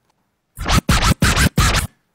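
DJ scratching on a DJ controller: a quick run of about five scratch strokes starting about half a second in, cutting off just before the end.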